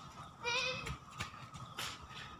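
A child's short, high-pitched vocal squeal lasting about half a second, starting about half a second in. It is followed by the crunch and rustle of running footsteps on dry fallen bamboo leaves.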